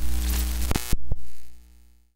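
Short electronic logo sting: a deep bass hum with steady tones over it and a loud hiss. Three quick hits come about a second in, then the sound fades out.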